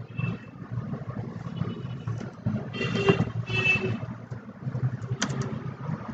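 Steady low background rumble, with a brief faint pitched sound around the middle and a few sharp clicks near the end, likely keystrokes as a search is typed into a computer keyboard.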